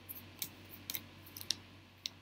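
Large oracle cards being handled and spread on a table: a handful of light, sharp card clicks and snaps, the strongest about one and a half seconds in.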